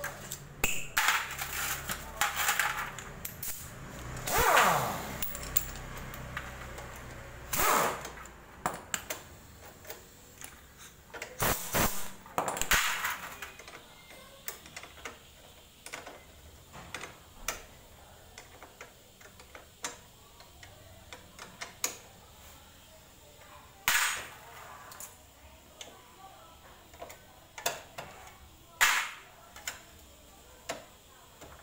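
Metal hand tools clinking and knocking against each other and against the motorcycle's rear drum-brake parts during reassembly: an irregular string of sharp clicks, with a few louder metallic clanks spread through.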